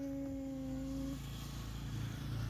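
A child's hesitant 'mmm' hum on one steady pitch, held for just over a second before answering, over a faint low steady hum.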